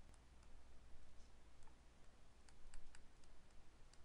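Faint, irregular clicks and ticks of a stylus tapping and dragging on a tablet screen as words are handwritten, about a dozen over the span, over a steady low hum.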